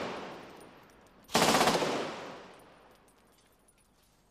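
Automatic gunfire: the echo of a burst dies away at the start, then a short burst of rapid shots comes about a second and a half in, its echo trailing off over the next second and a half.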